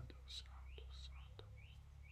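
Near silence after the narration stops: room tone with a steady low hum, a few faint clicks and faint short high chirps.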